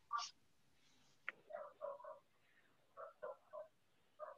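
Faint, short, high-pitched calls of a small animal, likely a pet picked up by a participant's microphone. There is one call near the start, a click, then two quick runs of three calls.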